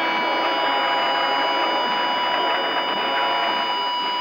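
Steady hiss with several thin, high, unchanging whining tones over it: the noisy background of an old sampled film or documentary soundtrack, just before its narration starts.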